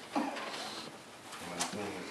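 Low, indistinct murmuring voices in short snatches, with a single sharp click about one and a half seconds in.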